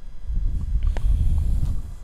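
Low, irregular rumble of wind buffeting the phone's microphone, with a couple of faint short taps about a second in.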